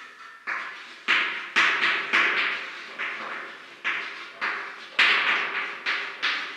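Chalk writing on a blackboard: a quick, irregular run of chalk strokes, about two a second, each starting with a sharp tap on the board and trailing off in a short scrape.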